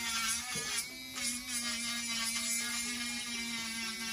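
Handheld electric nail drill running with a steady whine as it files fingernails.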